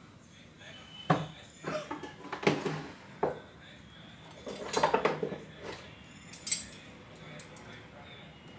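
Small hard objects clattering and knocking as a drawer is rummaged through: a handful of separate knocks and rattles spread over several seconds, with a busier cluster about five seconds in.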